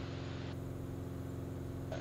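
Steady drone of a Cirrus SR20's single piston engine and propeller in cruise, heard through the headset intercom. A high hiss switches on about half a second in and cuts off suddenly near the end.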